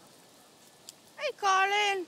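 A loud vocal call near the end: a quick falling sweep, then a held note of about half a second.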